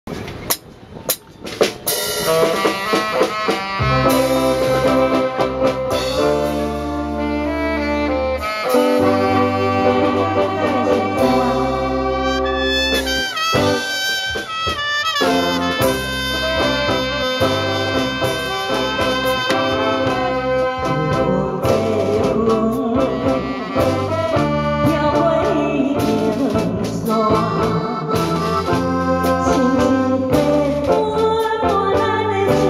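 Live band playing an instrumental introduction, a horn section carrying the melody over drum kit, keyboard and bass. The music starts about two seconds in, with a short break in the bass about halfway through.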